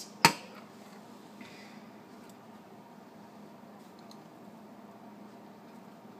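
A metal spoon clinks once, sharply, against a ceramic soup bowl, followed by quiet room tone with a few faint small ticks of utensils.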